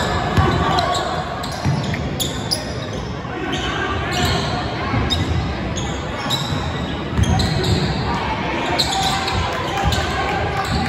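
A basketball bouncing irregularly on a hardwood gym floor during play, with the voices of players and spectators, all echoing in the gymnasium.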